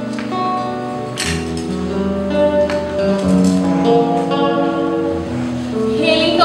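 Live acoustic guitar music: a slow line of held notes with a few sharper strummed accents.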